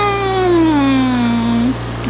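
A woman's long closed-mouth "hmm" while chewing gum: the pitch rises briefly, then slides slowly down until it stops just before the end. It is an appreciative tasting hum.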